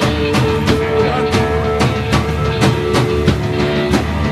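Live rock band playing an instrumental passage: a drum kit keeps a steady beat of about three strikes a second under electric guitars and bass.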